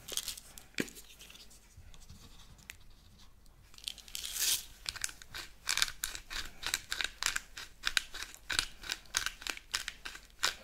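Hand-twisted pepper grinder grinding peppercorns: a quick run of gritty crunching strokes that starts about four seconds in, after a few faint handling clicks.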